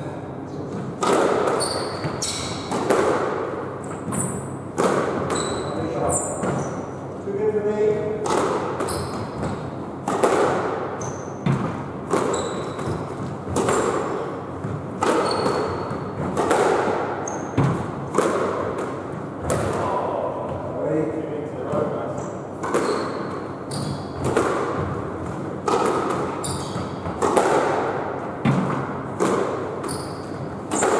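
Squash rally in a boasting drill: the ball struck by rackets and hitting the court walls about once a second, each hit echoing in the court, with short high squeaks of shoes on the wooden floor between strikes.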